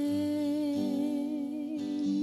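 A woman's voice holds one long wordless note with a slight vibrato over strummed acoustic guitar chords, in a live folk band.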